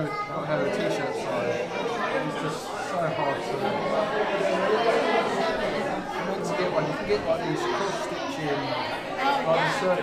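Overlapping conversation and chatter of many people in a busy dining room, with no single voice standing out.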